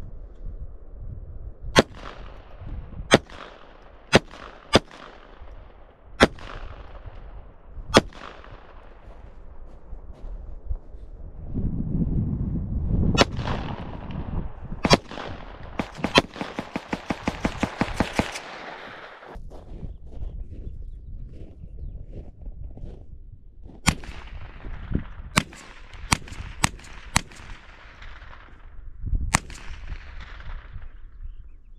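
Pistol being fired: single shots a second or two apart, each sharp crack trailing off in a short echo. In the middle comes a quick run of lighter cracks, several a second.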